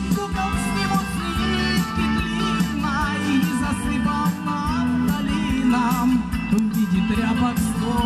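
Small live rock band with electric guitars and a drum kit playing an instrumental passage, with a melody line that bends and wavers in pitch over the bass and drums.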